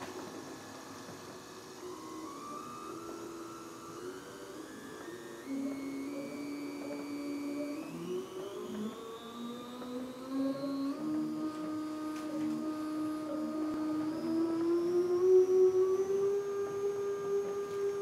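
Stepper motor of a homemade belt-driven honey extractor speeding up, its whine climbing in pitch in a series of small steps and growing louder as it nears 120 RPM.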